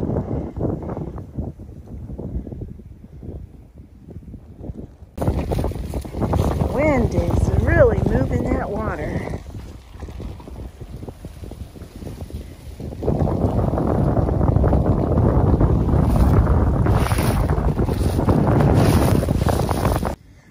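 Wind buffeting the microphone in gusts, a low rumbling rush that jumps louder about five seconds in and is heaviest and steadiest over the last seven seconds. A few short rising-and-falling calls or voice sounds come through the wind around the middle.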